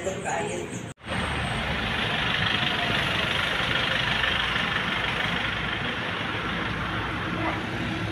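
A steady low rumbling noise starting abruptly after a cut about a second in, even and unbroken to the end. Before the cut, a brief voice.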